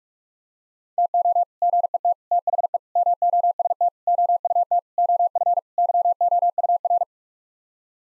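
Morse code at 45 words per minute: a single steady tone keyed in rapid dots and dashes grouped into words, starting about a second in and stopping about a second before the end. It repeats the seven-word phrase that begins 'to get the most out of'.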